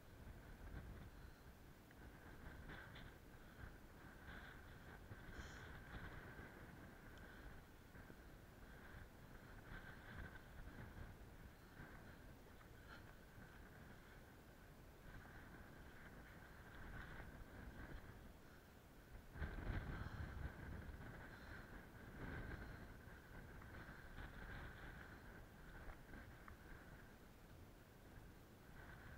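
Near silence: faint low wind rumble on the camera microphone, rising briefly to a louder gust about two-thirds of the way through.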